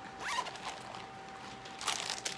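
Zipper on a small pink cosmetic case being pulled open, in a short pull at the start and another near the end.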